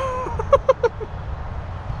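A high-pitched voice laughing: one drawn-out note, then a quick run of four short syllables about half a second in, over a low steady rumble.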